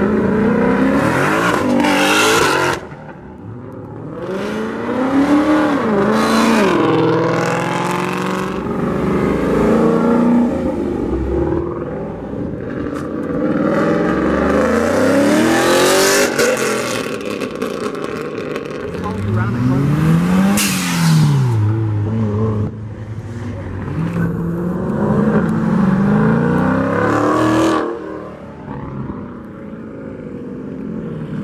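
Cars accelerating hard one after another, loud throughout. Their engines rev up in repeated climbing runs, each broken off by a drop in pitch at a gear change.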